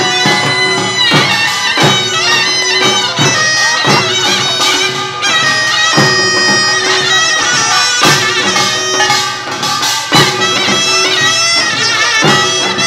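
Korean nongak farmers' music: a taepyeongso shawm plays a loud, wavering melody over gongs and drums.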